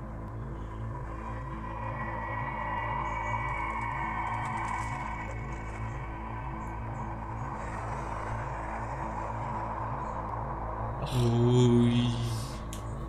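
Background music with a steady, evenly repeating low pulse. Near the end a brief louder voice sound cuts in for about a second.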